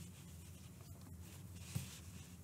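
Faint rustle of yarn being worked with a crochet hook, with a couple of light ticks and a soft knock near the end, over a steady low hum.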